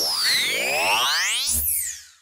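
Electronic title-sting sound effect: several synthesized tones swoop down and up in pitch at once, with a low thud about one and a half seconds in, then fading out.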